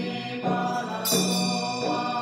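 Tibetan Bon liturgical chanting on a near-monotone pitch, with two ringing strikes of a ritual instrument about half a second and a second in.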